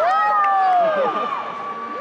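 An audience member's long, high-pitched cheer close to the microphone, over the crowd. It falls away about a second in, while a second steady high note carries on until near the end.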